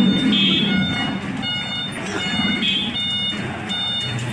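A repeating electronic beeping tone, sounding in short bursts about once or twice a second, over a low murmur of street noise.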